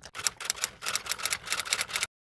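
Himalayan marmot chewing a piece of orange held in its paws: a rapid, irregular run of clicks and smacks from its mouth, cutting off suddenly at the end.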